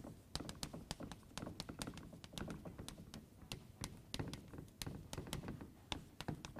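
Chalk writing on a blackboard: a quick, irregular run of taps and short scratches as the letters are written.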